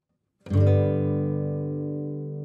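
Background music on guitar: a brief silence, then a chord struck about half a second in that rings on and slowly fades.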